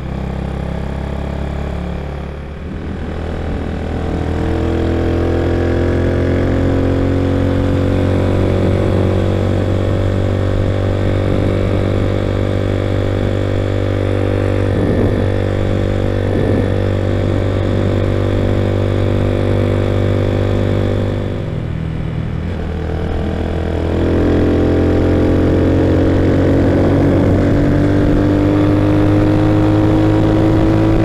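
Honda C90 step-through motorcycle, fitted with a Chinese-made replacement engine, running under way: the engine note climbs as the bike pulls away, holds steady at cruising speed, dips briefly about two-thirds of the way through, then climbs again as it accelerates.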